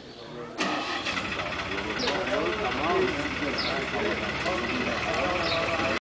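A motor vehicle's engine starts suddenly about half a second in and keeps running steadily close by, with men's voices talking over it.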